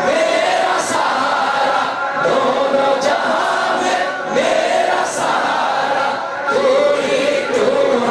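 A group of voices singing a devotional verse together, in drawn-out phrases about two seconds long with brief breaks between them.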